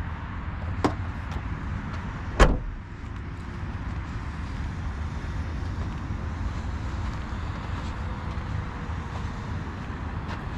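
A car door shutting with a single solid thud about two and a half seconds in, after a lighter click about a second in, over a steady low rumble.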